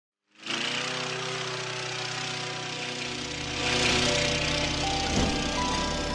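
Intro sting: a mower engine sound effect runs steadily under music. A whoosh swells about halfway through, and short held musical notes come in near the end.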